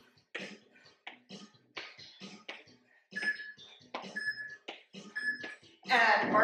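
An interval timer beeping three times, a second apart, counting down the end of the work interval, over steady quick footfalls of high knees on an exercise mat.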